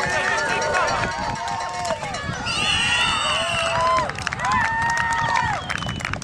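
Spectators yelling and cheering, many voices at once over each other. About two and a half seconds in, a shrill whistle blows steadily for just over a second.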